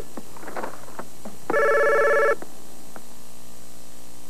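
A telephone ringing in short trilling bursts, one ring starting about a second and a half in and lasting under a second, with a few light clicks and knocks between rings.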